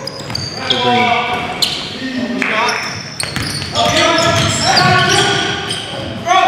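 Live sound of an indoor basketball game, echoing in a gym: players shouting, the ball bouncing on the hardwood court, and sneakers squeaking.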